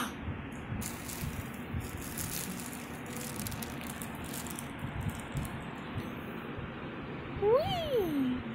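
Crinkling and rustling of a plastic bag, then near the end one short whine from a small dog that rises and then falls in pitch.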